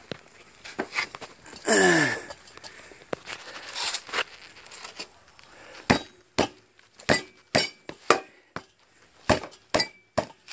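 Sharp, irregular metal knocks and clinks, about two a second in the second half, as a seized steel wheel is worked off a lawn tractor transaxle's axle. A short groan falling in pitch comes about two seconds in.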